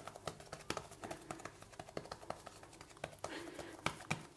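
Hands pressing and patting a piece of bread dough flat on a granite worktop: faint, irregular soft taps and clicks.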